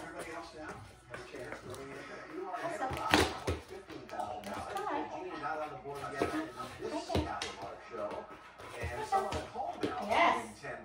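Television game show audio: speech over background music, with a few sharp knocks, the loudest about three seconds in.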